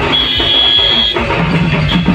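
Loud DJ music from a truck-mounted sound system. For about the first second the bass beat drops out under a steady, high, beep-like tone, then the beat comes back.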